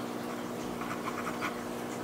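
Steel extra-fine nib of a Lamy Safari fountain pen scratching faintly across paper in a few short strokes, about a second in, over a steady low hum.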